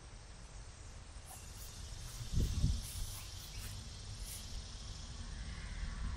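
Outdoor summer ambience: insects chirping steadily in the grass over a low rumble, which swells briefly about two and a half seconds in.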